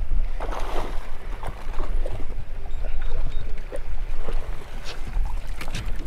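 A red drum being landed into a small boat: scattered knocks and splashy bursts of handling over a heavy low rumble of wind on the microphone.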